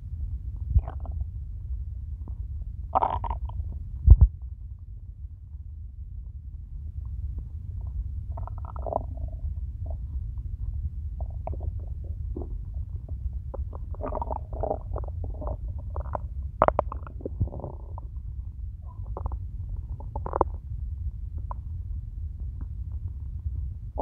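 Hungry stomach growling: scattered gurgles over a steady low rumble, with a busy run of quick gurgles past the middle. A short low thump about four seconds in is the loudest sound.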